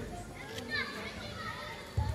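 Faint, scattered voices of players calling out across a football pitch, some high-pitched like children's shouts, with one sharp thud at the very end.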